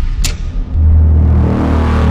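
Cinematic logo-reveal sound effect: a short bright zing about a quarter second in, then a loud deep rumbling swell that stops abruptly at the end.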